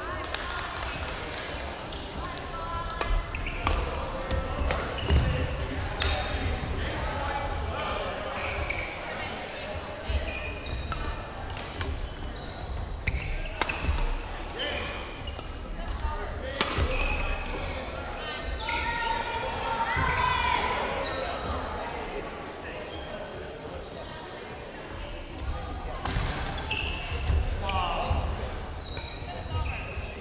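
Badminton rackets striking a shuttlecock, sharp clicks at irregular intervals from rallies on several courts, with sneakers squeaking on a hardwood gym floor. Everything echoes in a large gymnasium over steady voices.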